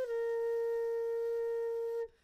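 A flute holding one long, steady note in background music.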